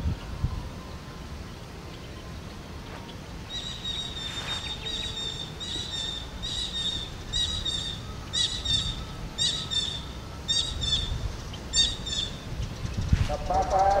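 A bird calling repeatedly, short high notes roughly twice a second, often in pairs, starting a few seconds in and stopping shortly before the end, over a low outdoor rumble.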